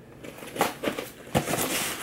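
Folding knife slitting packing tape on a cardboard box: a run of crackles and scrapes, a sharp click a little past halfway, then a brief tearing rasp near the end.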